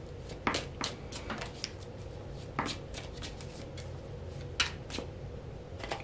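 Oracle cards being shuffled and handled by hand: a scatter of light, sharp card flicks and snaps, several in the first two seconds, a couple more about halfway through and near the end.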